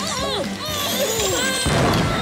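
Cartoon explosion sound effect: a rising whine, then a sudden loud crash about one and a half seconds in, over background music.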